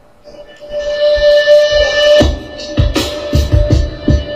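Electric guitar through an amplifier playing a held note that swells up over the first second. A little over two seconds in, it breaks into a run of heavy, low picked notes.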